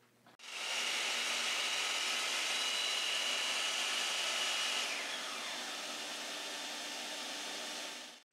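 Bosch CM10GD compact miter saw running and crosscutting a quarter-inch plywood panel, a steady motor whine with a rushing noise. About five seconds in, the whine glides down as the motor is released and spins down. A steady rushing noise carries on underneath until it stops just before the end.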